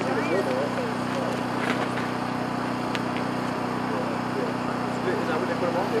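A steady low hum made of several evenly spaced tones, under indistinct voices of people talking in the background.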